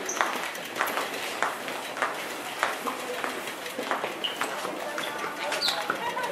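Cycling-shoe cleats clicking on a hard floor as riders walk, an irregular click every half second or so, with voices murmuring around.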